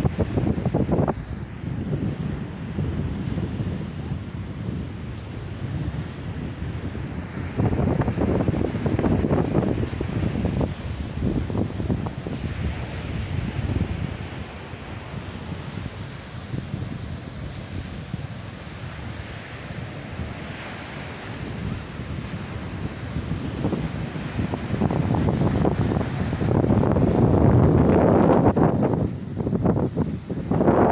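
Sea waves breaking and washing up a sandy beach, with wind buffeting the microphone. The surf swells louder about a quarter of the way in and again, loudest, over the last few seconds.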